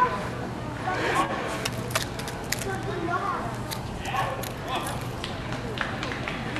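Indistinct voices talking in a large indoor arena, with scattered light clicks and a steady low hum underneath.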